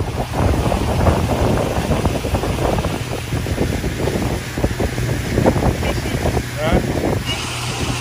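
Pontoon boat under way: the motor's steady low drone under heavy wind buffeting on the microphone, with a few brief fragments of voice.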